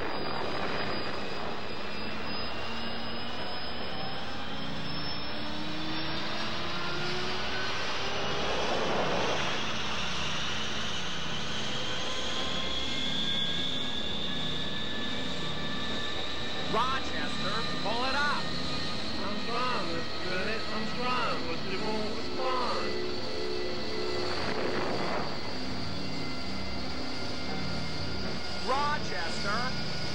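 Steady aircraft engine drone with a whine that climbs slowly in pitch over the first dozen seconds. A whooshing swell comes about nine seconds in and again near twenty-five seconds, and there are short vocal sounds in the second half.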